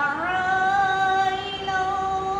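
A girl's solo voice reciting the Quran in melodic qirat style, gliding up early on into one long held note.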